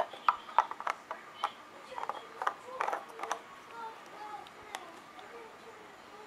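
Plastic clicks and knocks as the water reservoir of a garment steamer is handled and its cap is closed back up after filling. The clicks come thick in the first few seconds, then thin out.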